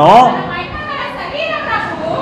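Speech: a man preaching into a microphone ends a phrase shortly after the start, followed by a quieter stretch with faint voices in the background.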